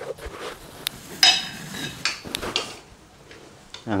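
Chopsticks clinking against a ceramic plate and bowl while rice is picked up: a few light clinks, the loudest about a second in with a brief ring.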